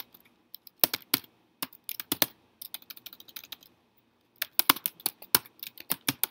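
Typing on a computer keyboard: uneven runs of keystroke clicks, a short pause a little past the middle, then a quicker run of keys.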